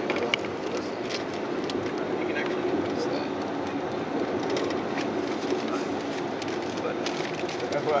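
Ride noise from inside a moving vehicle: a steady rumble with frequent small clicks and rattles.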